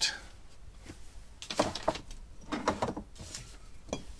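Bottles and jars knocking and sliding against each other and the wooden shelves as they are moved about in a pantry, in a few short bursts of clatter starting about a second and a half in.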